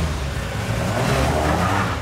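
A car driving up fast, its engine running hard over road and tyre noise, in a film soundtrack.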